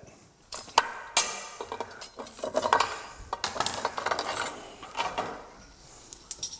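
Hard-shelled live lobsters clattering and scraping against a ceramic platter as they are handled, with a metal knife clinking on the plate. A run of sharp irregular clicks and knocks, loudest in the first second or so.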